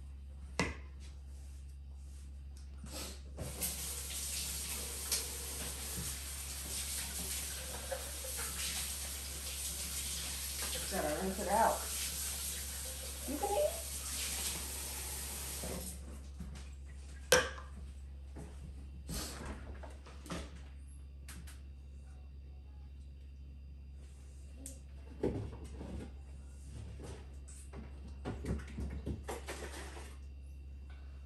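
Kitchen faucet running into the sink while a plastic sippy cup is rinsed. It turns off after about twelve seconds, and a few sharp knocks and clatters follow as things are set down and handled.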